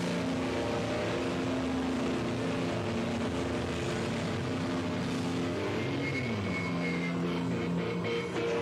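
Distorted electric guitars sustaining notes through loud amplifiers at a live rock show, the chord slides down in pitch about six seconds in, over a dense wash of noise.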